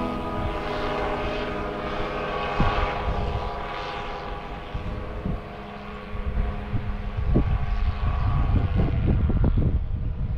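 Microlight trike's engine and pusher propeller droning steadily in flight, fading in the middle as it draws away. Wind buffets the microphone with a low rumble in the second half.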